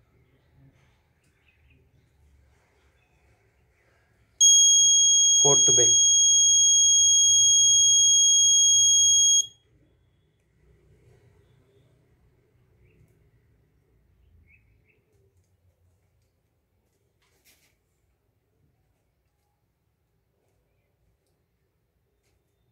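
Piezo buzzer of an Arduino school-bell timer sounding one continuous high-pitched beep for about five seconds: the scheduled bell, triggered as the real-time clock reaches the minute.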